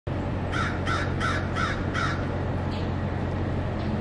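A bird calling: five short calls in quick succession, about three a second, in the first two seconds, over a steady low hum.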